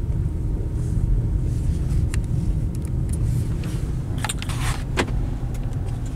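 Steady low rumble of a car running, heard from inside the cabin, with a few light clicks and a short rattle about four seconds in.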